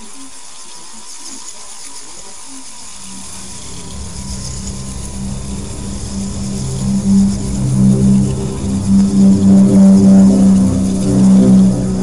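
Eerie horror soundtrack: a low, pulsing drone that starts about three seconds in and swells steadily louder.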